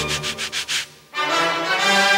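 Rapid rasping strokes of a wooden back scratcher raking over hair and scalp, several a second, over music. The scratching stops about a second in and brass music takes over.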